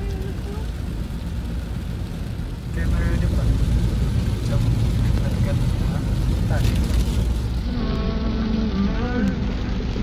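Heavy rain on a car together with road and engine rumble, heard from inside the moving car's cabin. The sound steps up to a louder, steady rumble about three seconds in.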